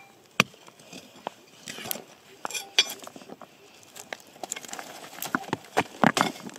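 A hand-held metal digging blade jabbing and scraping into stony dirt. Irregular sharp metal-on-rock clinks, a few close together near the end, with gritty scraping of soil and pebbles between them.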